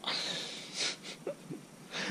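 A man's breathy exhale, followed under a second in by a shorter, sharper hiss of breath.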